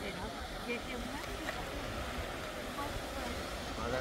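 Beach ambience: scattered faint voices of nearby people talking over a steady low rumble, with the surf of small waves.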